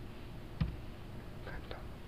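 Steady low background noise with a single sharp click a little over half a second in and a few faint soft sounds near the end.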